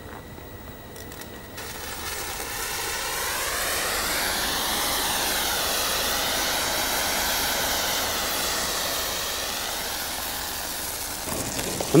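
A teaspoonful of sugar burning fiercely with a chemical that supplies its own oxygen, giving a loud, steady rushing hiss of flame. The hiss starts about a second and a half in, swells over the next couple of seconds and dies down near the end.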